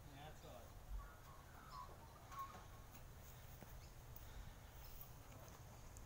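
Near silence: faint outdoor background with a low hum and one soft knock about a second in.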